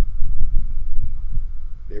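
Low, uneven rumbling thumps of wind buffeting the microphone, loud, in a pause between sentences; speech resumes at the very end.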